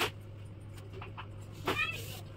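A plastic toy gun knocks once, sharply, on a tiled floor. Near the end comes a short, high, wavering cry.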